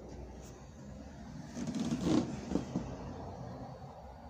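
Rustling and bumping from a phone being handled and moved close to hair and clothing, loudest about two seconds in, followed by a few short low knocks.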